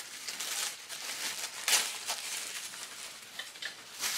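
Tissue paper rustling and crinkling as it is pulled apart and bunched up by hand, with a louder crinkle a little before halfway.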